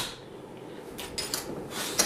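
A few light taps and scuffs of clogging shoes' metal taps on a wooden dance floor as the dancer shifts her feet and settles to stand still.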